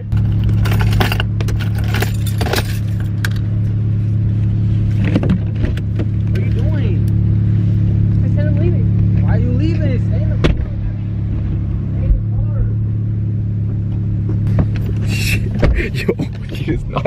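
A car engine idling steadily, heard from inside the cabin. Several knocks and rattles come in the first three seconds, and faint distant voices are heard in the middle.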